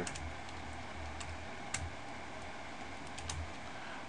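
A few scattered keystrokes on a computer keyboard, separate sharp clicks at uneven intervals over a low steady hum.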